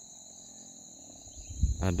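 Steady, high-pitched chorus of insects in the forest, holding two constant pitches without a break.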